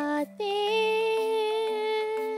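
A woman's singing voice with musical accompaniment: one note ends just after the start, then a long note is held with a slight vibrato.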